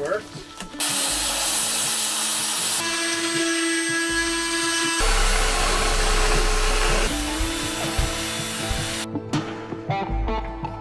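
A rapid series of short power-tool clips working wood, each running a second or two before cutting abruptly to the next; a belt sander is running on a plywood edge about six seconds in.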